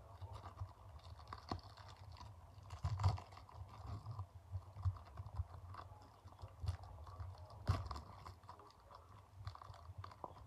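Clear plastic wrapper of a small trading-card pack crinkling as fingers pick at it and peel it open: faint, irregular crackles, with a couple of sharper crinkles about three seconds in and again near eight seconds.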